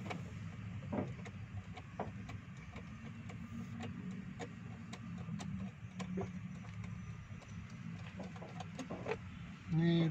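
Scattered light clicks and taps of a hand tool working the bolts and trim of a Jeep Wrangler's dashboard, over a low steady hum.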